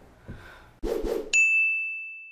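Two short noisy hits, then a bright bell-like ding sound effect that starts suddenly past halfway, rings on one steady pitch and slowly fades.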